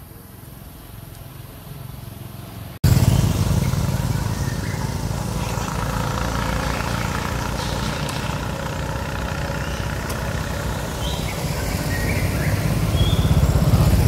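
Quiet outdoor forest ambience, then a sudden cut about three seconds in to louder roadside traffic: a car and motorbikes running along the road, a steady low rumble.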